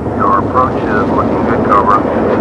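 Steady roar of a military jet in flight, heard as from inside the cockpit. Short high chirping sounds break in over it several times.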